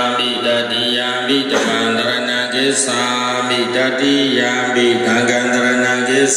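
Buddhist devotional chanting: voices reciting a prayer together on long held notes that step up and down in pitch.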